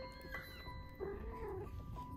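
A British Shorthair kitten meows, a short arching cry about a second in, with a fainter mew just before it, over soft background music with chiming mallet notes.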